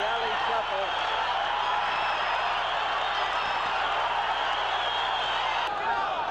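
Arena crowd noise: a steady din of many voices cheering and shouting.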